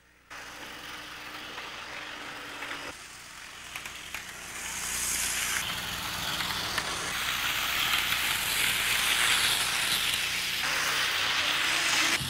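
Model train running along its track, a steady rumble that grows louder about four seconds in as it comes closer.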